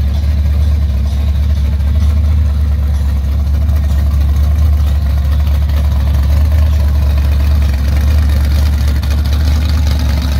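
Fourth-generation Chevrolet Camaro drag car's carbureted engine idling loud and steady at close range, its exhaust pulsing evenly, while the car rolls slowly past.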